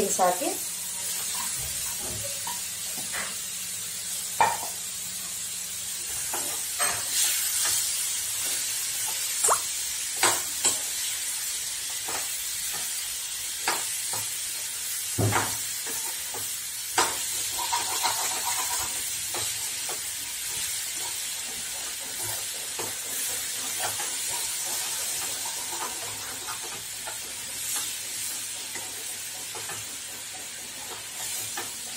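Chopped green beans sizzling in hot oil in a steel kadai while a metal spoon stirs them. The spoon scrapes and knocks against the pan at irregular moments over a steady hiss.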